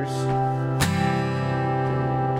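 Takamine acoustic guitar strummed on a C major chord. The chord rings on, with one sharp strum a little under a second in.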